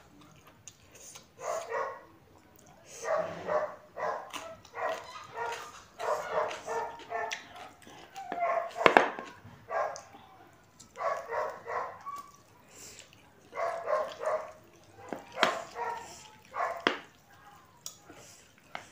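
A dog barking repeatedly in short runs of a few barks each, with pauses of a second or two between runs.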